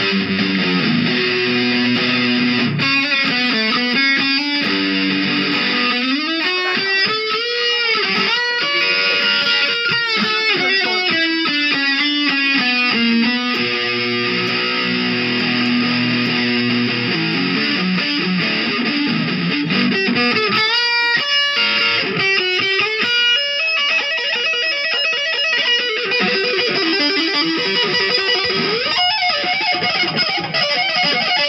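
Electric guitar playing lead: fast runs of notes, with several long, smooth swoops of pitch up and down.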